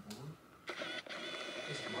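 A small motor whirring steadily, starting about two-thirds of a second in, faint under the room sound.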